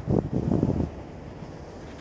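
Wind rumbling on the microphone for about the first second, then settling into a fainter low rumble.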